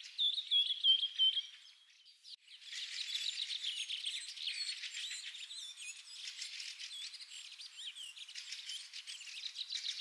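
Songbirds chirping and twittering, several at once: a loud run of short repeated chirps at the start, a brief lull about two seconds in, then a dense, continuous chorus of high chirps and trills.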